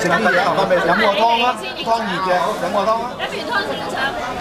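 Several people talking at once around a dinner table: indistinct, overlapping conversation and chatter.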